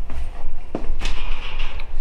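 Handling noise from a handheld camera being swung around: a low rumble with a few short knocks and clicks about a second in.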